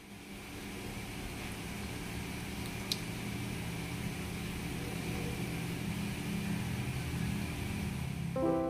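A steady low mechanical hum with hiss, like a fan or motor, slowly growing louder, with one sharp click about three seconds in.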